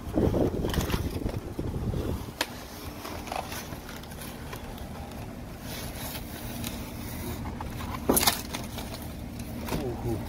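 Styrofoam shipping box being worked open, foam rubbing and scraping under the hands and a blade, with a sharp click about two and a half seconds in and a brief, louder scrape or crack about eight seconds in.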